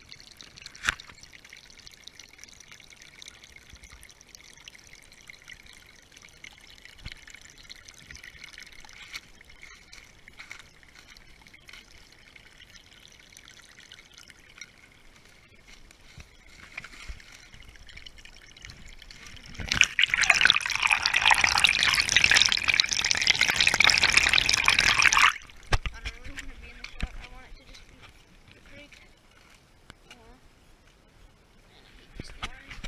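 A small seasonal creek trickling faintly, with scattered clicks. About twenty seconds in, a loud rushing noise drowns everything out for about five seconds, then stops suddenly.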